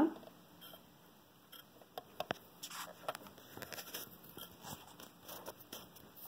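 Faint handling sounds of thread being worked into a sewing machine's metal top thread guide: a few small sharp clicks, the clearest about two seconds in, and light scratchy rustling after it.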